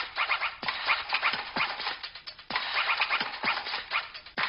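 Scratchy, crackling sound-effect music on the film's soundtrack, coming in phrases that restart about every two seconds, each with several short falling low blips.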